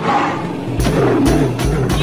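Urumi drum's rubbed-stick roar, a rough sound gliding in pitch, during a break in the singing. The music's bass beat drops out at first and comes back a little under a second in.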